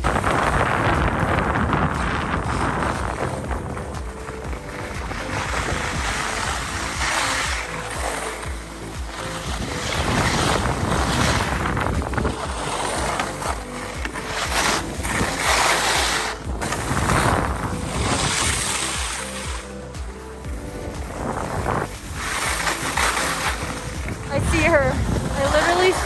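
Wind rushing over the microphone and skis hissing and scraping on packed snow during a run down a ski slope, surging and easing as speed changes, with background music underneath.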